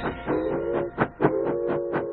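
Instrumental music: a held guitar chord over a steady beat, about four beats a second.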